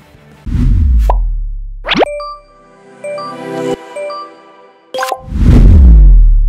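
Logo sting music: a deep boom about half a second in, then a quick rising swoosh into a couple of seconds of bright chiming notes, then a second deep boom near the end that rings on.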